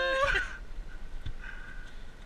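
A man's voice holding a single note, ending about half a second in, followed by a faint steady high whine over low background noise.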